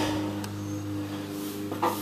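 A steady low hum with a soft rustle of the paper letter being handled at the start, a faint tick about half a second in, and a short murmur just before the end.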